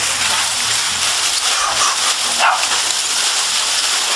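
Crumpled aluminium foil costume crinkling and rustling continuously as the wearer thrashes about.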